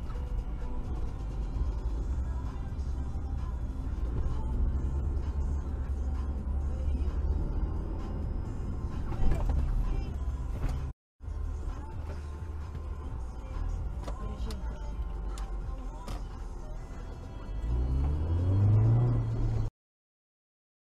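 In-car dashcam audio: steady engine and road rumble with music playing faintly, and a brief sharp knock about nine seconds in. After a short break, the engine note rises near the end as the car accelerates.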